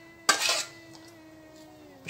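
A metal spoon knocking once against a metal bowl while spooning béchamel sauce: a sharp clink about a quarter of a second in, with a short ring after it.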